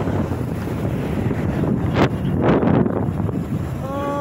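Wind buffeting the microphone on a moving motorcycle, over a steady low rumble of engine and road noise, with two brief louder surges in the middle.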